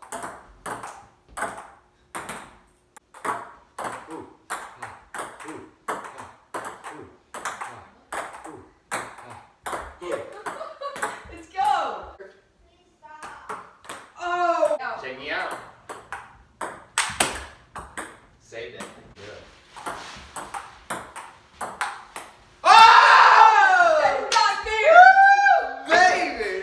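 A table tennis rally: the ball clicks back and forth off the paddles and a wooden dining table, about two hits a second. Loud shouts break out near the end as the point is won.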